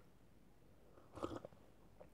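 Near silence, then a short cluster of soft mouth sounds a little over a second in: a person swallowing a sip of drink from a paper cup.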